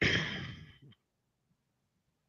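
A man's breathy sigh, starting sharply and fading out within about a second.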